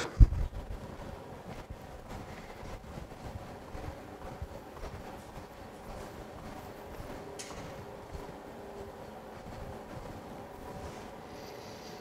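Quiet room background with a faint hum, a low thump just after the start, then scattered faint knocks and clicks as equipment is handled.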